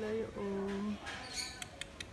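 A person's voice holding two short, level notes without words, then a few light clicks near the end.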